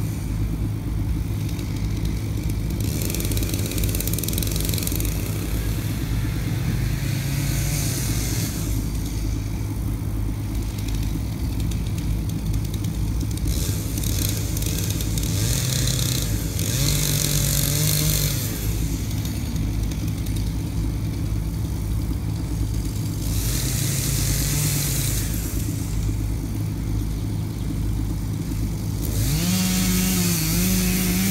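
Chainsaw running while felling a large tree: the engine holds steady, then revs up in several bursts of a second or two with a rasping hiss as the chain cuts, and revs up sharply near the end.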